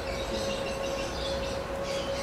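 Steady background noise: a low rumble and hiss with a constant high-pitched hum running through it, and no speech.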